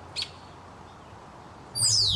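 Quiet outdoor background with a single short bird chirp a fraction of a second in. Near the end, a loud added sound effect starts suddenly: a steeply falling whistle-like sweep over a deep rumble, of the kind laid over a whip-pan transition.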